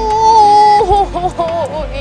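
A woman's long, high cry of "uuuy" at the cold, held for almost a second and then wavering into shorter quavering sounds. Background music with light ticking runs underneath.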